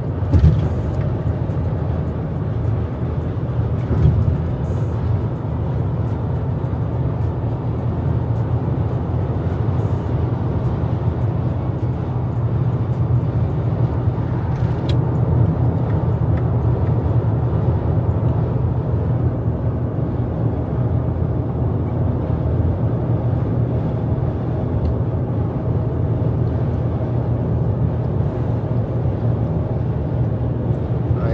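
Steady drone of a 22-year-old van's engine pulling up a long freeway grade at about 100 km/h, mixed with tyre and wind noise, heard inside the cabin. A single short knock comes about 4 seconds in.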